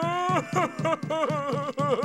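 A cartoon dog's voice bawling and sobbing: one long rising wail, then rapid blubbering sobs, about four a second.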